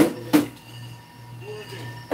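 Two sharp knocks of hard objects, about a third of a second apart, over a steady low hum.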